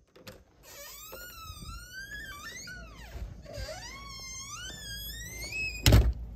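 A small dog whining in a string of long, high cries that slide up and down in pitch, with a loud thump near the end.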